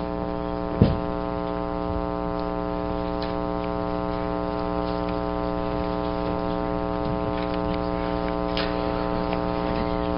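Steady electrical mains hum with a stack of evenly spaced overtones, with a single thump about a second in and a few faint clicks later.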